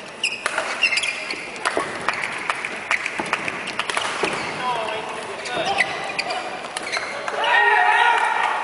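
Badminton doubles rally: sharp racket hits on the shuttlecock and shoes squeaking on the court floor, over spectators' voices. Near the end the crowd shouts and cheers as the rally ends.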